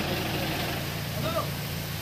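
Steady low mechanical hum, like an engine idling, with a brief faint voice in the background a little past halfway.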